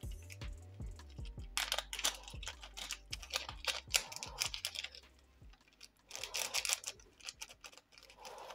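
Clear plastic parts bag, holding a photo-etched brass sheet, crinkling and rustling as it is handled, in three bursts of crackle.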